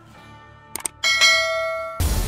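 Two quick mouse-click sound effects, then a bell chime that rings out and slowly fades: the sound of a subscribe-button and notification-bell animation.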